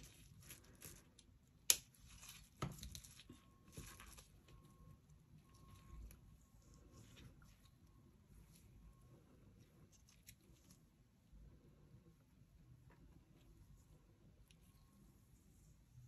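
Faint handling sounds of dried pressed flowers having their stems trimmed: two sharp clicks about two seconds in, then soft scattered rustling and crinkling.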